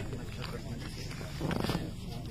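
Low, indistinct voices of a group of people sitting close by, with a louder voiced sound, like a moan, about one and a half seconds in.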